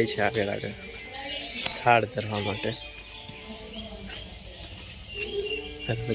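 Cricket chirping: a run of short, high, repeated chirps.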